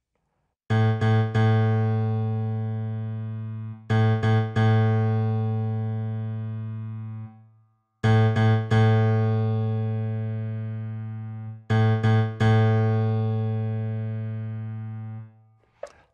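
Yamaha Montage synthesizer playing its 'CFX plus FM EP' preset, a layered grand piano and FM electric piano, with the super knob turned all the way down. Chords are played as three quick strikes and then a held chord that slowly fades, and this figure comes four times: the same phrase played twice.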